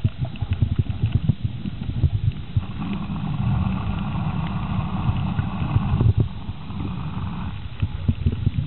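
Water noise on an underwater camera's microphone: irregular low thumps and sloshing of water against the housing. A steady motor hum joins it from about three seconds in and fades out near the end.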